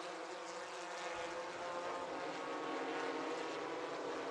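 Formula Vee and Formula 1600 single-seater race cars' engines running at speed on track: a steady engine note with several tones over road and tyre noise.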